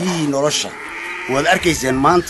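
A man speaking, his voice close and loud.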